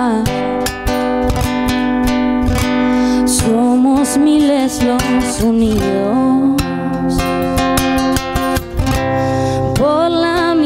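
Acoustic guitar strummed steadily under a slow sung melody, a solo voice with guitar performing a ballad.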